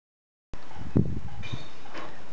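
Outdoor garden background: a steady low rumble with a single sharp knock about a second in and a few faint high chirps.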